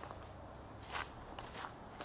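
Footsteps through overgrown weeds and brush: a few soft, scuffing steps, the first about a second in.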